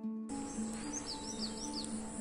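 Small birds chirping: a quick run of short, falling chirps through the middle, over an outdoor hiss. Soft plucked-string background music plays underneath.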